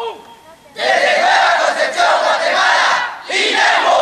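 Marching band members shouting a call together in unison: one long group shout of about two seconds, then a second shorter shout near the end.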